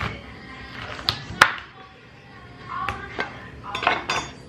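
Chef's knife cutting through a pomegranate on a wooden cutting board, the blade knocking against the board several times; the sharpest knock comes about a second and a half in.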